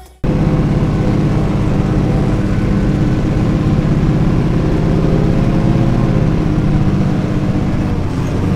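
Renault 155.54 Turbo tractor's diesel engine running steadily at working revs, heard from inside the cab as the tractor drives across the field sowing. The sound cuts in abruptly just after the start and holds even.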